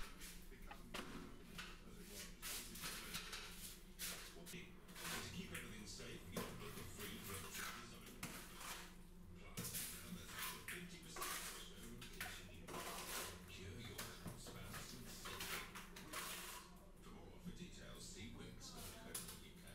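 Plastering trowel scraping sand-cement render on and off a board and spreading it onto the wall: a run of short, faint, irregular scrapes, several a second.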